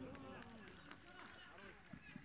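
Faint, overlapping shouts and calls of several voices from footballers on the pitch, heard in an empty stadium with no crowd noise.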